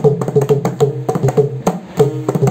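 Mridangam played with fast finger strokes, playing a mohra. Ringing pitched strokes on the right head sound over the deep bass of the left head.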